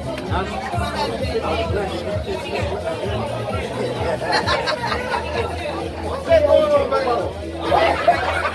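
Guests talking over one another over music with a steady beat playing from DJ speakers in a large hall; one voice rises louder a little after six seconds in.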